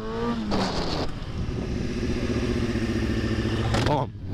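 Sport bike engine accelerating hard, the rev rising briefly before a shift into second gear about half a second in, then pulling steadily in second with wind noise. The engine note drops away suddenly near the end as the throttle is shut to go onto the front brake for a stoppie.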